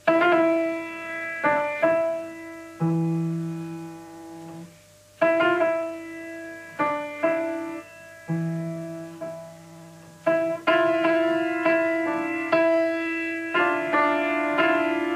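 Grand piano played slowly: chords struck every second or two and left to ring and fade, coming closer together in the last few seconds. It is the student's own composition, played through from her score.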